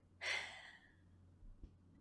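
A woman's breath into a close microphone, a short breathy rush about a quarter second in that fades within half a second, then quiet room tone.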